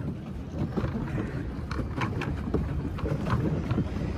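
Wind buffeting the microphone over water churning and lapping around a pedal boat as it is pedalled, with a few light clicks around the middle.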